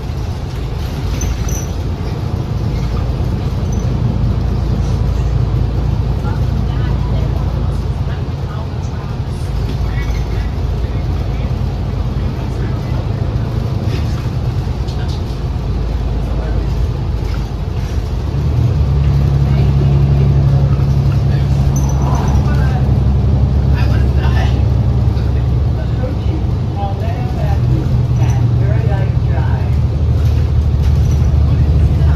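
Cabin sound of a 2019 New Flyer XD60 articulated diesel bus on the move: a steady low engine and drivetrain drone with road noise. The drone grows louder about two-thirds of the way through.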